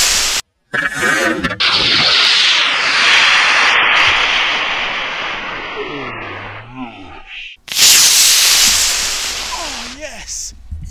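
A cluster of model rocket motors burning at liftoff and in the climb: a loud rushing roar that fades as the rocket climbs away. It breaks off abruptly twice and comes back at full loudness each time.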